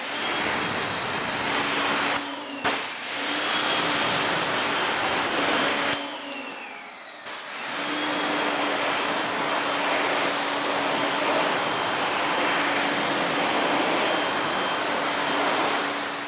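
Active 2.0 electric pressure washer spraying, rinsing Wet Coat spray sealant off a car's wheels: a loud, steady hiss of the water jet over the pump motor's hum. It cuts out briefly twice, about two seconds in and again from about six to seven seconds, then runs on.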